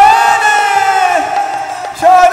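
Many voices singing one long held note together in a devotional kirtan chorus. The note slides down about a second in and then fades.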